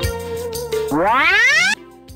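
Background music, with a loud comic sound effect about a second in: a pitch that climbs steeply for under a second and then cuts off suddenly, leaving quieter music.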